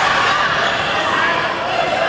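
A basketball being dribbled on a hardwood gym floor, with voices calling out in the gym around it.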